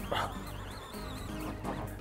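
Background music with low held notes that change about halfway through.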